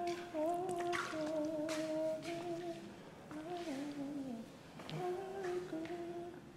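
A person humming a wordless tune, the melody sliding up and down in long held notes, with a short break a little after four seconds in. A few faint clicks sound under it.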